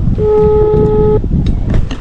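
Mobile phone on speaker playing an outgoing-call ringing tone while a call connects: one steady beep about a second long, starting just after the beginning.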